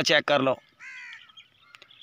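A man's voice breaks off about half a second in, then a single short bird call sounds around one second in, fainter than the speech.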